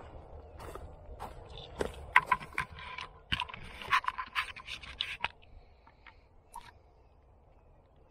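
Irregular scraping, rubbing and clicking close to the microphone, stopping about five seconds in.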